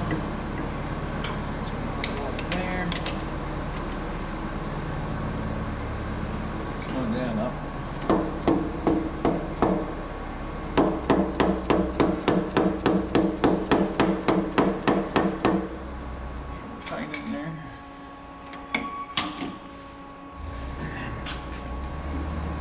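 A hammer tapping the hydraulic swivel housing to seat it against the lathe chuck: a few scattered metallic taps, then a fast even run of about four taps a second lasting several seconds. A low steady machine hum runs underneath and drops out near the end.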